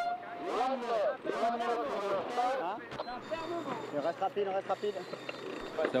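Sailors talking among themselves aboard a GC32 foiling catamaran, picked up by the boat's onboard microphone. The voices are clearer in the first half and fainter after about three seconds.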